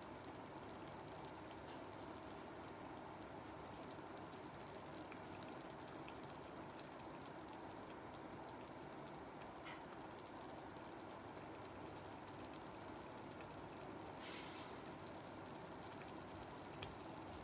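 Faint, steady low noise with scattered tiny ticks from a pot of soup simmering on an induction hob, with a short soft hiss near the end.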